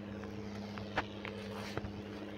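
Small tractor diesel engine running steadily under load while towing a loaded trailer over a ploughed field, with a sharp knock about halfway and another near the end.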